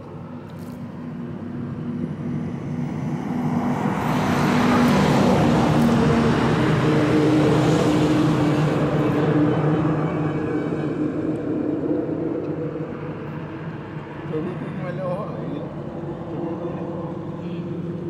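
A motor vehicle's engine running steadily, with traffic noise that swells to its loudest about five to eight seconds in and then fades.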